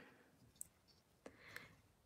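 Near silence: room tone with a couple of faint clicks from handling small tools.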